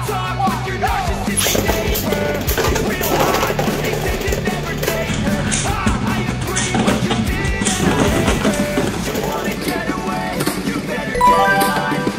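Rock background music with drums and a steady beat.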